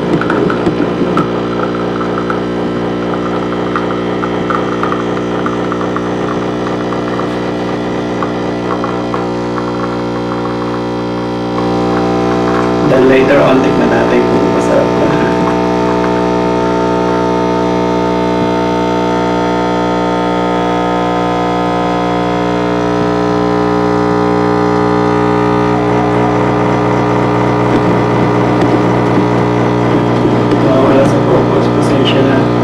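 Britt Espresso capsule coffee machine's pump humming steadily while it brews espresso through the capsule into the cup. The hum gets a little louder about twelve seconds in, with a brief rattle soon after.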